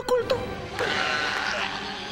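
Two quavering, bleat-like cartoon vocal cries, one right at the start and another about a second in, over soft background music.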